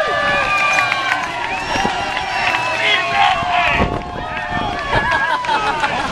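Crowd of spectators shouting and cheering, many voices overlapping at once.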